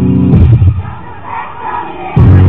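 Rock band playing loudly live, with electric guitar and bass, stopping under a second in; the crowd then cheers and shouts.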